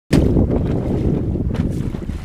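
Wind buffeting the microphone aboard a small sailboat under sail: a loud, steady low rumble.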